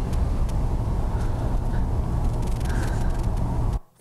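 Steady loud low rumble and hiss from the soundtrack of an old clinic-room video recording, with scattered faint clicks. It cuts off suddenly near the end.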